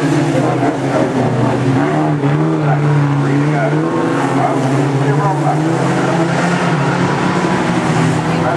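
Several Reliant Robin race car engines running together at varying revs as the cars race round the oval. Their pitches rise and fall and overlap continuously.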